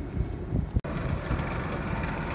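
Wind on the microphone with a low rumble, broken by a brief gap just under a second in.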